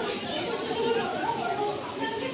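Indistinct voices talking over one another: chatter of several people, with no clear words.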